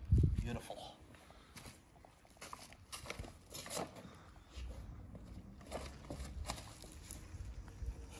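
A heavy thump right at the start, then scattered footsteps and light knocks as someone walks across stone paving.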